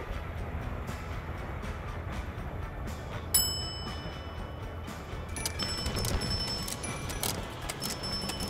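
Background music with a bright chime-like strike about three seconds in and repeated ringing tones through the second half, over a steady low rumble from the vehicle driving with the plywood-loaded roof rack.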